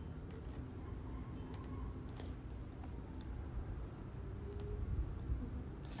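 Small scissors snipping a thin paper napkin: a few faint, scattered snips over a low steady room hum.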